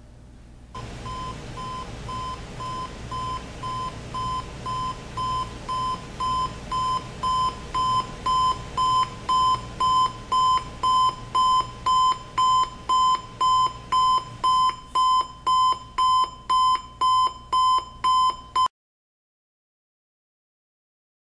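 Timex T235W clock radio's buzzer alarm beeping on one high tone, nearly two beeps a second, growing louder over the first ten seconds or so, then cut off suddenly near the end.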